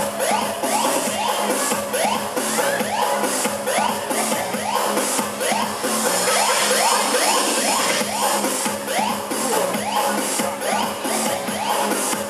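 Electronic dance music with a steady beat and a short rising synth figure repeating about twice a second.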